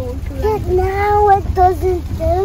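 A child singing, with long held notes starting about half a second in, over the steady low rumble of a car driving on the road, heard from inside the cabin.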